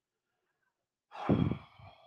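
Near silence, then about a second in a man lets out a loud sigh, a breath blown out close to the microphone that fades away.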